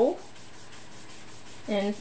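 Small ink sponge rubbed back and forth over cardstock, blending ink onto the card: a soft, steady rubbing.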